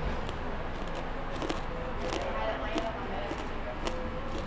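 A person chewing a crisp fried chip close to the microphone, with a few sharp crunches spread through the chewing, over a faint murmur of voices.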